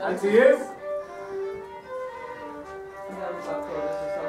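Fiddle playing a slow tune in held notes that change every half second or so. A voice is heard briefly at the start.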